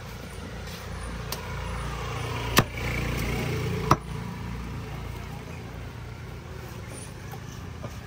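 Two sharp chops of a heavy fish-cutting knife through a large fish onto a wooden block, about two and a half and four seconds in. Under them, the rumble of a vehicle passing on the road swells and fades.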